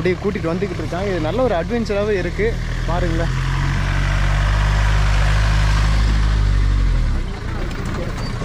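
A Force Motors jeep's engine running steadily as the jeep drives close past, with a rushing noise over the engine hum. The sound takes over about three seconds in and drops away shortly before the end.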